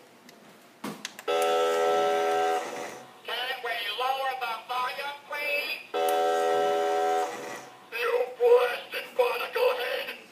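SpongeBob SquarePants spin o'clock toy clock playing its built-in electronic sound clip: a click about a second in, then a held electronic note, then a recorded voice. The held note comes back about six seconds in, followed by more of the recorded voice.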